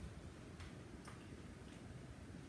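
Quiet room tone with a few faint clicks, roughly one every half second.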